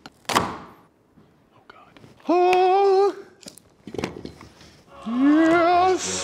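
A man's voice making two drawn-out, wordless vocal sounds, each close to a second long, the second gliding upward in pitch. A short thunk comes just after the start and a knock about four seconds in.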